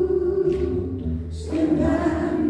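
Live singing with orchestra: a long held vocal note that moves to a new note about one and a half seconds in, over a steady low bass.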